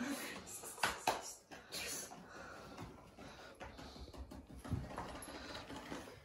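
Thin plastic carrier bag rustling and crinkling faintly as a cat moves about wearing it, with scattered short crackles.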